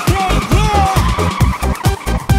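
A cartoon car sound effect of a car driving off, fading about a second and a half in, over upbeat electronic backing music with a steady beat.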